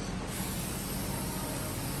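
Aerosol can of spray-on bed liner coating hissing steadily as it is sprayed.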